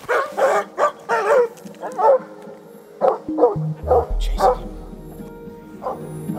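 Hunting dog (elkhound) barking repeatedly: a quick run of barks in the first two seconds, then a few more spaced out. Background music with low held notes comes in about halfway.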